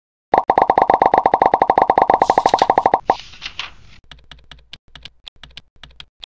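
Animated-intro sound effects: a fast, even run of pitched plops, about a dozen a second, for the first three seconds, then a short swoosh and scattered light ticks.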